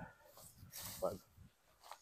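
Faint sounds from a dog in an otherwise quiet spell, with one short vocal sound about a second in.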